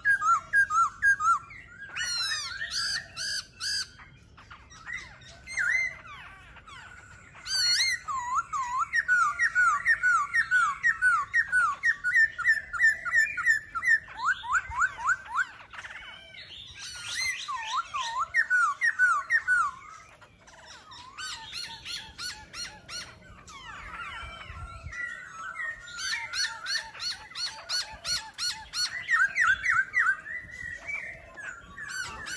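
Caged laughingthrushes (khướu) singing: loud, varied phrases of rapid repeated whistled notes and trills, with short lulls about four seconds in and around twenty seconds in.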